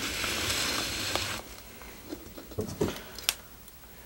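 Fingers rubbing and picking at fine trident maple roots and soil matted on a rock: a rustling hiss for about the first second and a half, then softer handling noises with a few light ticks and one sharp click near the end.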